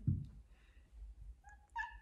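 A domestic cat giving a short, high-pitched meow in two quick parts near the end, after a soft low thump at the start.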